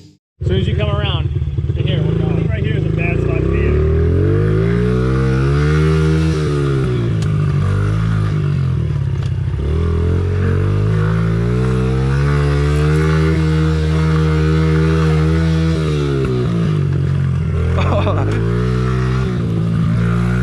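Honda CRF50 pit bike's small single-cylinder four-stroke engine heard from on board under racing throttle, its pitch climbing as the throttle opens and dropping as it eases off, several times over, with a long high steady stretch in the middle.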